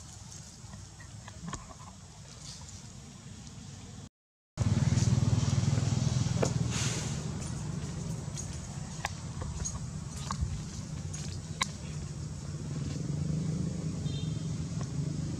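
Steady low rumble of a running vehicle engine, louder after a brief dropout about four seconds in, with scattered faint clicks.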